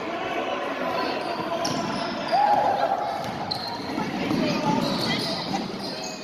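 Basketball being dribbled on a hardwood gym floor, over the voices of players and spectators echoing in the hall.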